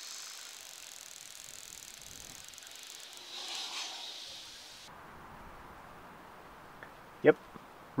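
Faint steady hiss of background noise, swelling briefly around the middle and dropping away suddenly about five seconds in.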